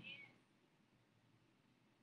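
The trailing end of a woman's spoken word in the first moment, then near silence: room tone.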